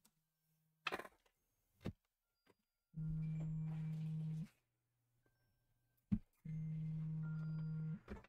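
A mobile phone vibrating on a hard surface: two long, steady buzzes of about a second and a half each, a couple of seconds apart, in the pattern of an incoming call. A few light knocks come before them, with a sharper one just before the second buzz.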